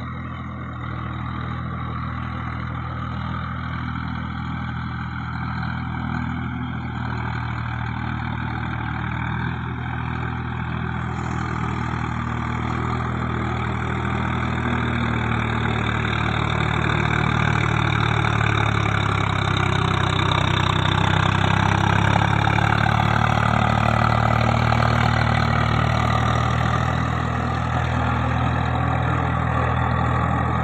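Swaraj 744 FE tractor's three-cylinder diesel engine running steadily under load as it pulls a rotavator through flooded paddy mud. It grows louder through the first two-thirds as it comes closer, then eases slightly near the end.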